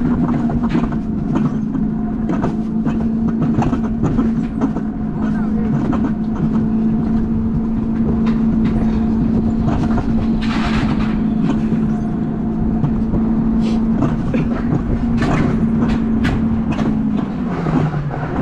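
Alpine coaster sled running along its tubular steel track: a steady hum from the wheels with frequent clacks over the rail joints. Near the end the hum drops in pitch as the sled slows.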